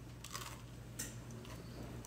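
A person biting into a slice of homemade bread and chewing it, with a few faint crunchy clicks, the clearest about a second in.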